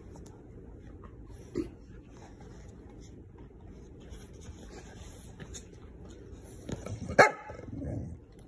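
A dog barks once, short and loud, about seven seconds in, in play with another dog. A smaller, sharper sound comes about a second and a half in.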